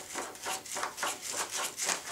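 Quick, even rubbing strokes, about four or five a second, as the RC model's wing is worked back and forth against the fuselage.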